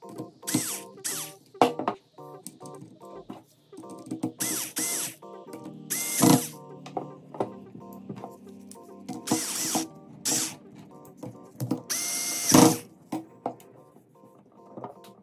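Electric screwdriver driving screws into a steel corner bracket in about seven short bursts, several of them rising in pitch as the motor spins up to a steady whine. Background music plays underneath.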